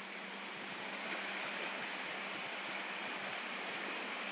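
Small waves lapping and washing at the edge of a sandy shore: a steady wash of water that grows slightly louder about a second in.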